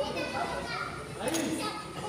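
Background voices of several people talking and calling out, some of them high-pitched, overlapping throughout.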